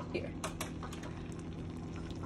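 Metal slotted spoon stirring thick creamy pasta in a stainless steel pot, with light clicks and scrapes of spoon against the pot and two sharper clicks about half a second in.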